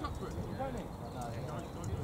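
Indistinct voices of players and spectators calling across an outdoor football pitch, several at once and none clear, over a steady low rumble.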